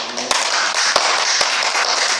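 Audience applause: many hands clapping, rising suddenly and holding steady.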